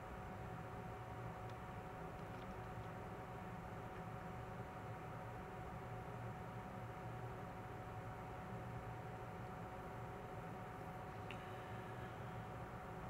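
Faint steady room tone from the voiceover microphone: a low electrical hum with a thin steady whine and soft hiss, and a couple of faint ticks, one early and one near the end.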